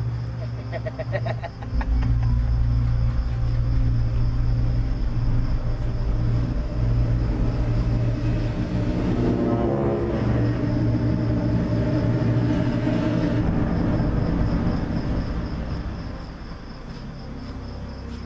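A motor vehicle's engine running, a low steady rumble that comes in about two seconds in and eases off near the end.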